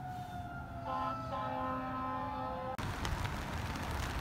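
Emergency vehicle sirens wailing across the city, with a slowly falling tone and a second steady-pitched tone joining about a second in, sounding for a fire burning a few blocks away. The sound cuts off suddenly near the end, giving way to wind on the microphone and street noise.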